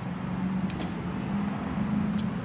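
A steady low hum, with one faint click about two-thirds of a second in.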